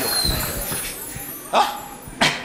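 A person's single short, sharp cry about one and a half seconds in, ringing in a large hall, after the voice and music before it die away.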